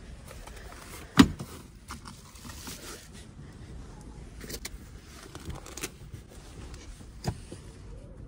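Minivan seat being handled: a sharp latch click about a second in and another near the end, with faint rustling between.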